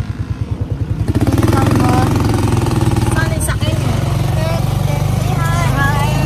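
Motorcycle engine of a Philippine tricycle (a motorcycle with a sidecar) running on the move, a low pulsing drone that grows louder about a second in.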